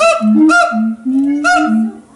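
Siamang calling loudly: a rapid series of loud, pitched calls, three strong ones in two seconds, with lower held notes between them.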